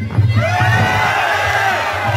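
Crowd erupting in loud shouts and cheers about half a second in, over the ring's Muay Thai fight music, reacting to a fighter being knocked down.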